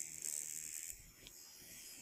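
Deminuage NanoPen microneedling pen buzzing faintly against the skin on its medium setting, a thin high buzz that weakens about a second in.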